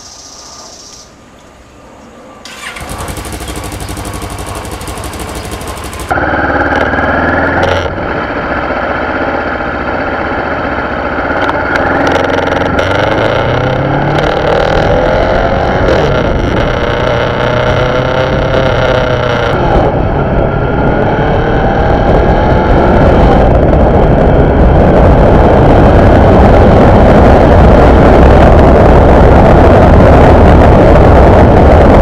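Kawasaki Ninja 650R parallel-twin engine starting a few seconds in, then the bike riding away: the engine note climbs and drops back a few times as it shifts up through the gears. Wind noise builds toward the end.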